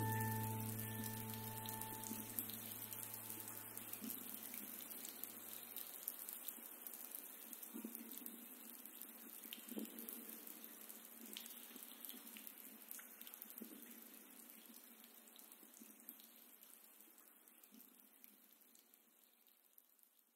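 The last held chord of soft instrumental music dies away in the first few seconds, leaving faint running water with small drips. The water fades out gradually to near silence near the end.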